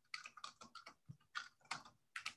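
Faint, irregular keystrokes on a computer keyboard, a dozen or so clicks in uneven clusters.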